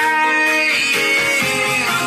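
Music played through an Oontz Angle 3 portable Bluetooth speaker, picked up by a phone's built-in microphones: held instrumental notes, with a bass line coming in part way through.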